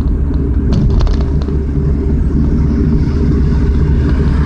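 Car engine and road noise heard from inside the cabin, a steady low rumble while cruising in fourth gear with the foot eased lightly off the accelerator. A few light clicks come about a second in.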